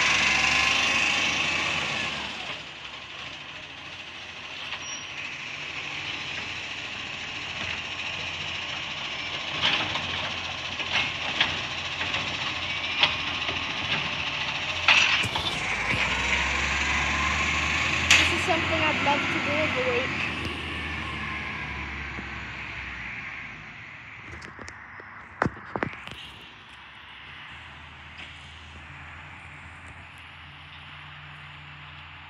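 Side-loading garbage truck: its hydraulic arm hisses as it sets down a wheelie bin, then the truck's engine and hydraulics run, louder about halfway through with a low rumble and gliding whine, as it pulls away down the street, with scattered knocks and clunks. The sound fades as the truck moves off.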